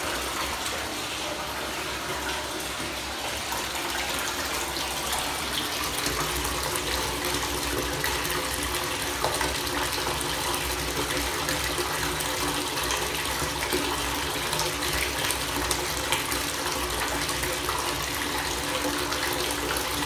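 Water running steadily from a bathtub tap, an even rushing with a faint steady hum under it.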